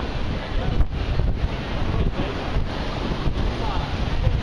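Wind buffeting the microphone, a gusty low rumble, over the background noise of a busy pedestrian street.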